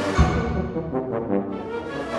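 Concert wind ensemble with solo tuba playing a loud, brass-heavy passage, with a deep percussion stroke about a fifth of a second in.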